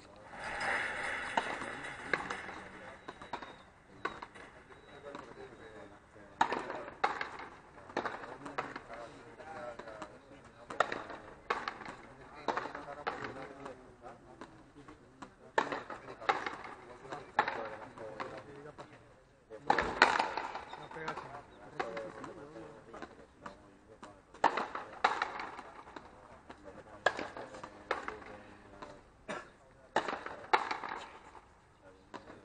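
Frontenis rally: a rubber ball struck by strung rackets and cracking off the concrete front wall and floor, sharp hits coming irregularly about every one to two seconds.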